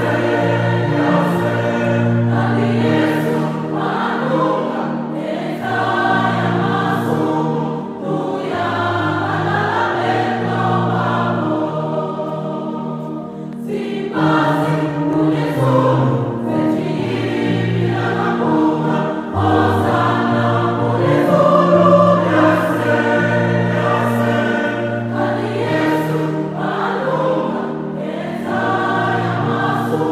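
Choir singing a gospel song in several voices over a steady bass line, with light percussion ticking along.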